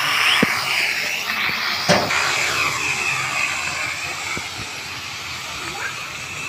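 Toy quadcopter's small electric motors and propellers whining, the pitch sweeping up and down as the throttle changes, fading over the last couple of seconds. A sharp knock about two seconds in.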